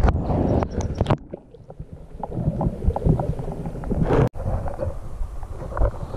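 Lake water sloshing and gurgling around a camera held just under the surface, muffled, with many small ticks and knocks. The sound cuts out sharply for an instant about four seconds in.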